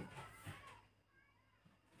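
Near silence: a voice trails off at the start, then faint high gliding calls from an animal come about a second in.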